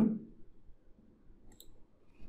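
A single computer mouse click about one and a half seconds in, over faint room tone, after the end of a spoken word.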